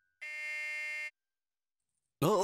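An apartment doorbell buzzer pressed once, giving a single steady electric buzz just under a second long.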